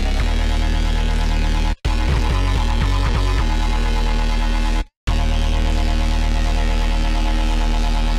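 Xfer Serum drum and bass roller bass patch playing long, loud held low notes at a faster tempo, cutting out briefly about two and five seconds in, with the pitch moving in between. The patch layers a PWM Juno wavetable with a CrushWub wavetable through a gentle low-pass filter moved by an LFO.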